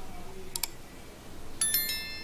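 A mouse-click sound effect about half a second in, then a bright bell-like chime of several quick overlapping notes near the end: the click and notification-bell sounds of a subscribe-button animation.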